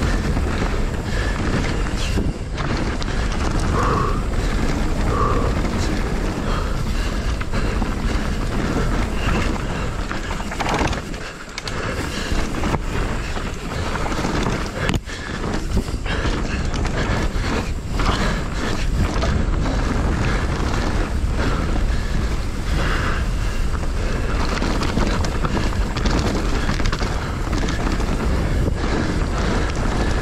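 Mountain bike running down a rough trail at race pace: a steady rush of wind and tyre noise on the onboard camera microphone, broken by frequent knocks and rattles from the bike over bumps. The noise drops briefly about eleven seconds in.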